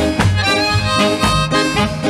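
Ska record playing an instrumental passage with no vocals: a reedy wind instrument carries held melody notes over a walking bass and a steady offbeat chop about twice a second.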